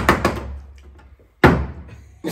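Part-filled plastic bottle thumping onto a table: a quick cluster of knocks right at the start, then a single thump about one and a half seconds in.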